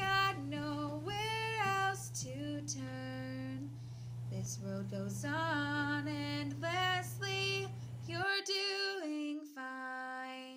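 A female voice singing a slow melody unaccompanied, holding long notes and sliding between them.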